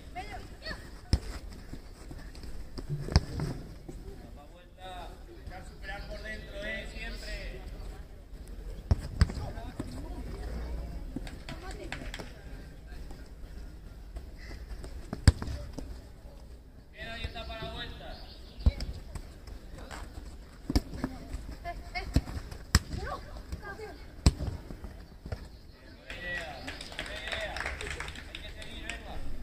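A football being kicked during play, a string of sharp thuds, about eight in all. The loudest comes about halfway through. Players' voices call out between the kicks.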